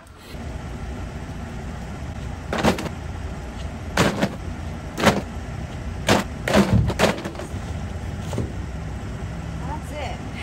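Plastic soda bottles thrown out of a metal dumpster and landing on pavement, with knocks from inside the dumpster: about six sharp thuds between a couple of seconds in and about seven seconds in. A steady low rumble, like an idling vehicle, runs underneath.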